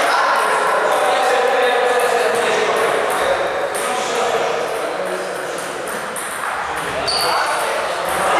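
Table tennis balls clicking off bats and tables in an irregular patter of sharp pings from several tables, echoing in a large sports hall, with voices talking over them.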